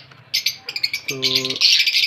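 Lovebirds chirping in a fast, dense chatter of high notes, breaking off briefly at the start and around the middle before coming back strongly near the end.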